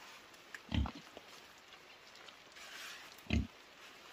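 Flat stones being set down and pressed into wet mud: two short, low thuds about two and a half seconds apart.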